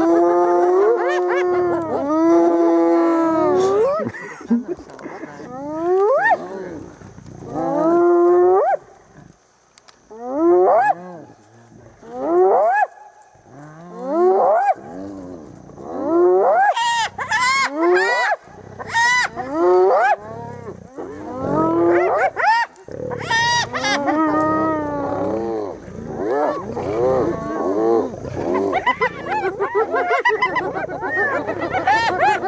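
Spotted hyenas calling in a long series. There are held and rising whooping calls at first, then from about halfway a faster run of high, wavering calls.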